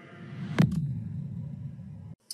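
Closing sound design of a horror movie trailer: the music fades out, then a single loud hit lands about half a second in, followed by a low rumble that dies away.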